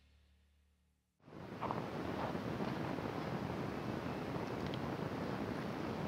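Silence for about a second, then steady outdoor background noise with wind on the microphone, a few faint short sounds standing out in it.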